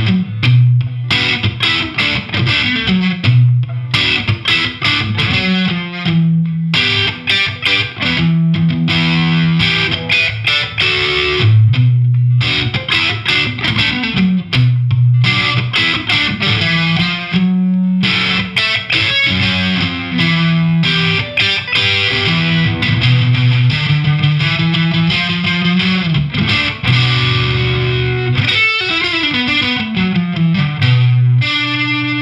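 Fender Stratocaster on its single-coil pickups through an MXR Classic Distortion pedal, with the distortion near one o'clock and the tone near ten o'clock, into a Marshall DSL100HR amp. It plays distorted chords and riffs, with short breaks about six and eighteen seconds in.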